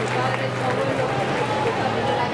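People talking over one another in a hall full of audience, with crowd noise and a low steady hum underneath.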